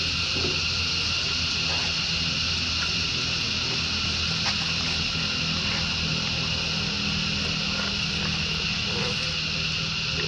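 A steady, unbroken high-pitched insect drone, with a low steady hum underneath.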